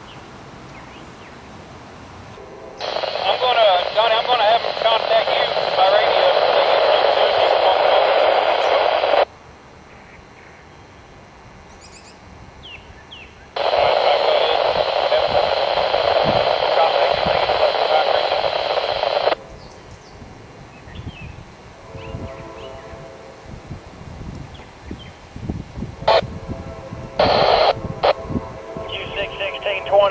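Railroad radio traffic coming over a scanner: two transmissions of about six seconds each, with voices garbled and thin through the narrow radio band, each switching on and cutting off abruptly as the transmitter keys and unkeys. Shorter bursts of radio come in near the end.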